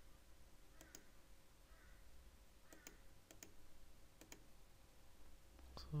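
Faint computer mouse clicks, about five spaced through a few seconds, over quiet room tone.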